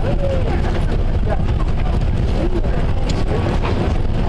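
Steady wind rumble buffeting the microphone, with scattered voices from a crowd underneath.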